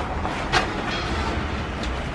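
A large glazed vitrified floor tile being handled and laid down on cardboard, with a sharp knock about half a second in and a lighter click near the end, over a steady low rumble.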